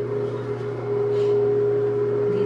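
A steady hum holding one pitch, with a lower hum beneath it, unchanging throughout.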